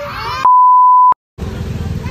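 A loud edited-in bleep: one pure, steady beep tone lasting under a second that cuts off into a moment of dead silence. Just before it a child whines and cries, and after it comes the noise of an outdoor crowd.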